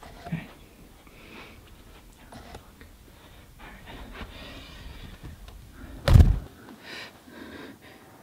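Quiet rustling and handling noises as things are moved about in the dark, with a single loud, heavy thump about six seconds in.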